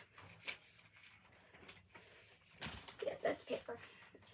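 Loose-leaf binder paper being handled and rustled, with a couple of sharp clicks.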